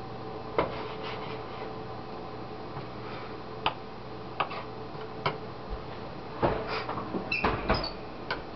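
Kitchen knife tapping and scraping on a wooden cutting board as chopped tomato and onion are pushed into separate piles: a few separate knocks, then a quicker run of knocks and scrapes near the end, over a steady low hum.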